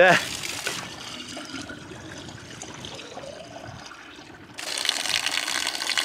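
Spring water pouring steadily from a metal pipe spout, starting suddenly about four and a half seconds in after a stretch of faint background noise.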